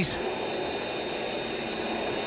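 Steady rushing hum with faint high whines inside the cockpit of a crashed ARCA stock car, whose engine is not running after a failed attempt to restart it. A brief high hiss at the very start.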